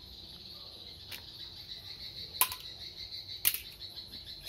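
Three sharp plastic clicks as a USB tester is handled and pushed into a USB power adapter, the second and third loudest, over a steady high-pitched whine.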